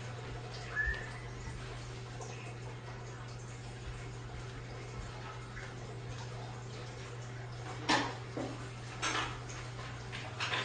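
Quiet room tone under a steady low hum, with a brief faint squeak about a second in and a few short noises near the end.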